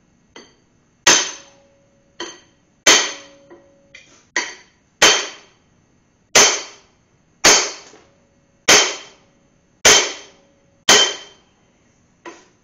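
A two-and-a-half-pound sledgehammer strikes a metal bar held against a corroded, stuck piston, driving it out of a Mopar 400 engine block. There are about eight hard, ringing metal blows, roughly one to one and a half seconds apart, with a few lighter taps between the early ones.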